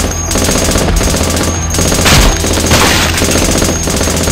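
Automatic rifle fire sound effect: long rapid bursts of shots, broken by a few brief pauses.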